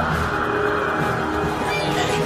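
Cartoon soundtrack: background music under a steady, loud rushing-noise sound effect.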